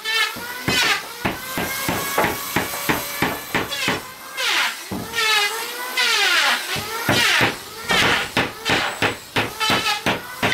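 Rapid, irregular knocks of hand tools on wood: a hammer striking nails into small wooden blocks and a machete chopping at a plank, several blows a second. Several times a high, wavering voice sounds over the blows.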